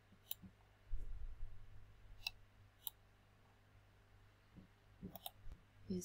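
Computer mouse button clicks, scattered single clicks and a quick pair near the end, with a low thump and rumble about a second in.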